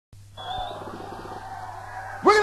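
Live stage sound: a steady electrical hum from the amplifiers, with a held tone coming in about half a second in.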